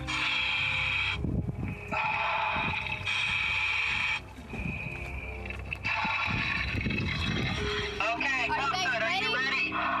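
Scuba divers breathing through their regulators: long hissing inhalations alternating with bubbling exhalations. Near the end comes a garbled, warbling voice.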